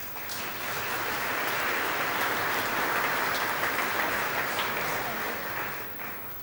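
Audience applauding, starting suddenly and holding steady, then dying away near the end.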